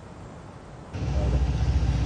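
Low, steady rumble of a car running, heard inside the cabin, starting abruptly about a second in after a faint hiss.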